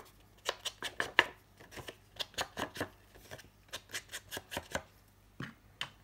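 An ink blending tool with a foam pad is dabbed and swiped along the edges of a sheet of patterned paper, distressing them with black ink. It makes an irregular run of short taps and scuffs on the paper.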